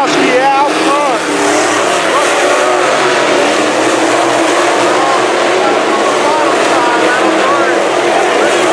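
A pack of IMCA SportMod dirt-track race cars at racing speed, their V8 engines running together, with the pitch rising and falling as they come off the turn and pass by.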